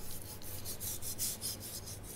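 Sharp knife sawing back and forth through salmon skin on a cutting board: a quiet run of short, repeated scraping strokes as a last bit of skin is trimmed off.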